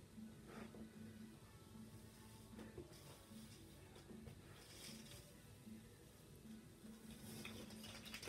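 Near silence with a faint steady hum, and soft scattered crackles of blue painter's tape being peeled off paper.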